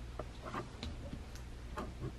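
About half a dozen faint, scattered clicks and ticks of steel forceps touching a plastic deli cup as paper towel is worked out of it.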